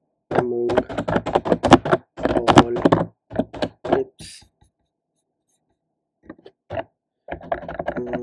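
Computer keyboard typing: a quick run of keystrokes for the first few seconds, a pause, then a few more keystrokes near the end as a mistyped word is deleted.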